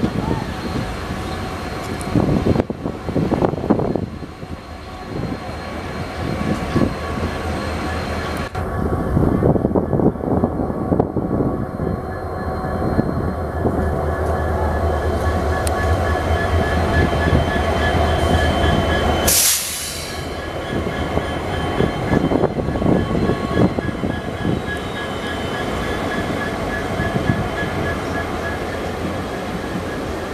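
Passenger train running, heard from on board: a steady rumble of wheels and coach on the rails. About two-thirds of the way in there is a short sharp sound, and the deep rumble drops away after it.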